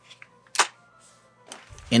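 A single short, sharp click about half a second in as the AR pistol is handled.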